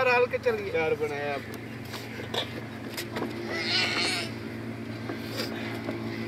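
A steady low engine hum runs under a voice heard in the first second or so, with a short harsh sound about two-thirds of the way through.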